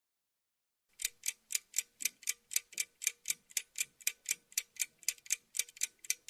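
Clock ticking quickly, about four ticks a second, starting about a second in.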